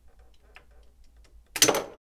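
Spring-loaded plastic projectile launcher on a Fans Hobby MB-16 Lightning Eagle toy being fired: a few faint plastic clicks as the button is worked, then one loud, sharp snap about a second and a half in as the missile shoots out.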